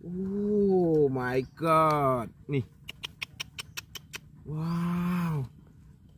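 A man's drawn-out, excited exclamations, including a long "wow". In the pause between them comes a quick run of faint, sharp clicks, about seven a second.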